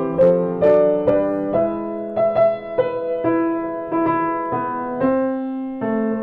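C. Bechstein Model A grand piano from 1904 being played, freshly tuned and voiced: a passage of sustained chords, changing about twice a second.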